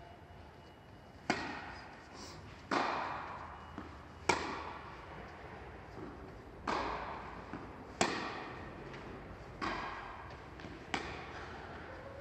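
Tennis ball hit back and forth with rackets in a rally, about seven sharp pops roughly every second and a half, each ringing on in a large, echoing indoor hall.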